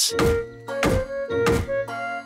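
Wooden mallet striking a wooden fence post: three evenly spaced thunks, about two-thirds of a second apart, over background music.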